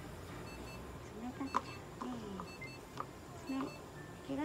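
A few short, low moaning vocal sounds and a sharp click about one and a half seconds in. Faint paired electronic beeps come now and then.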